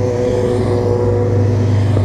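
Motorcycle engine idling close by while another motorcycle approaches, its steady engine note growing gradually louder.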